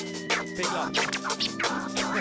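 DJ scratching a sample on a DJ controller's jog wheel, quick back-and-forth sweeps cutting over a beat with sustained bass notes.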